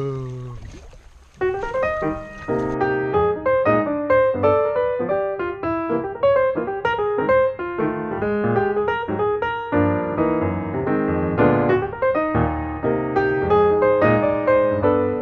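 Background piano music, a quick run of struck notes, starting about a second and a half in after a voice trails off.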